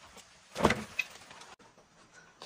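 A wooden plank knocking and scraping as it is set down, about half a second in, followed by a small tap.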